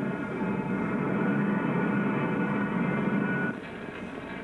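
Steady machinery drone: a low hum with a set of steady higher tones above it, which drops away about three and a half seconds in.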